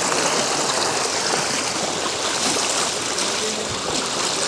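Muddy floodwater running fast across a road, a steady, even rush of flowing water.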